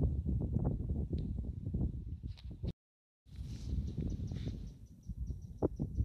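Wind buffeting the microphone: a gusty low rumble. About three seconds in it breaks off into a moment of dead silence, then resumes.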